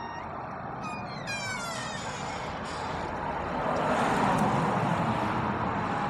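Street ambience with a car passing, its noise swelling to a peak about four seconds in. A short falling squeal comes about a second in.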